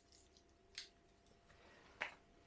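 Near silence, broken by one short, faint click about a second in as a small gear item is handled.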